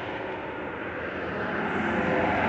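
Steady road and engine noise inside a moving car, growing slightly louder near the end.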